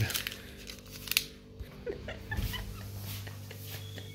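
A steady low electrical hum, stronger from a little past two seconds in, with a few faint clicks and handling noises.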